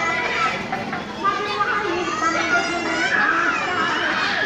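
Crowd chatter: many women's and children's voices talking and calling out at once, overlapping with no pause.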